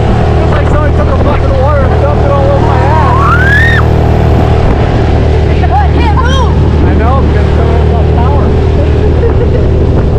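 A small outboard motor drives an inflatable boat at speed with a steady drone. Voices call out over it, one with a rising cry about three seconds in.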